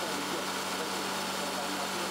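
Experimental Volkswagen Polo car engine, adapted to burn hydrogen, running steadily on a test bench, with an even hum on one constant low tone.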